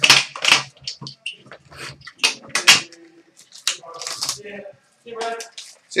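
Plastic wrapping on a box of trading cards crinkling and tearing in a series of short, irregular bursts as the box is opened and handled.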